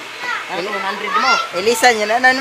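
Excited voices of young people talking and calling out, louder and higher-pitched in the second half.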